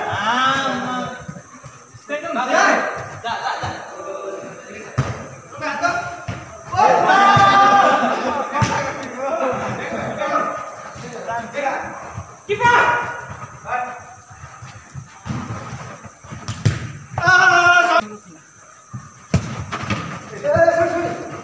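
Players shouting to one another during a futsal game, with several sharp thuds of the ball being kicked.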